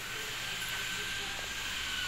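Steady low hum and hiss of room background noise, with a faint thin whine running through it.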